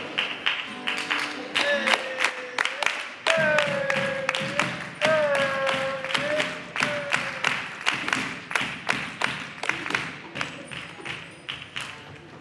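Carnival comparsa playing live: steady percussion strokes about three a second, with a long held note sounded three times in the middle.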